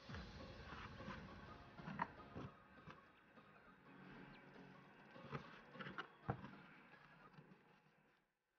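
Faint rustling of braided cotton macrame cord being pulled and knotted by hand, with a few brief soft taps along the way.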